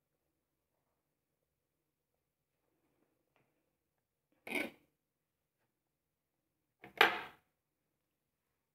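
Two short clatters of kitchen utensils, a fork knocking against a plate or the worktop, about two and a half seconds apart; the second is louder. Between and around them there is near silence.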